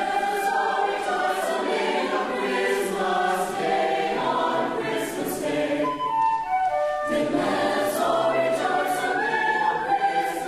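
Mixed choir singing in parts, with a flute playing along. The voices thin out briefly and come back in fuller about seven seconds in.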